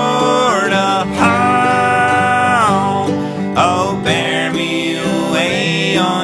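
Male voices singing a bluegrass gospel song in four-part harmony, holding long chords, over plucked acoustic string accompaniment.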